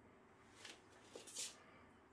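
Near silence, with two faint, brief rustles, one about half a second in and another a little before the end.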